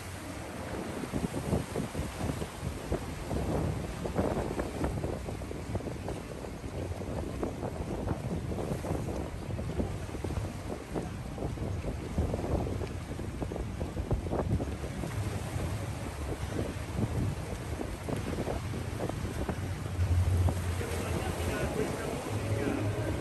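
Wind buffeting the microphone over sea waves washing against the rocks, an irregular noisy rumble without a break.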